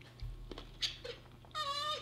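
A few soft knocks, then a short high-pitched whimper about one and a half seconds in, the loudest sound here.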